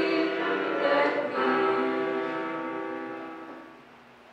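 Voices singing the last line of a hymn chorus through a sound system, closing on one long held note that fades out shortly before the end.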